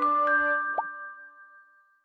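Closing notes of a radio station's logo jingle: chiming notes ringing on and fading away, with a quick rising pop about 0.8 s in, dying out shortly before the end.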